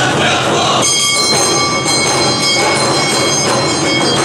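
Awa-odori accompaniment: large hand-held drums beating steadily with a metal hand gong (kane) ringing over them. The gong's bright clang comes in about a second in and keeps ringing.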